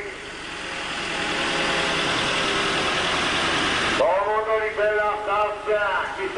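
A small motor vehicle's engine running as it drives along a street: a steady noisy sound that swells up over the first second, holds, and cuts off suddenly about four seconds in, when a man's voice takes over.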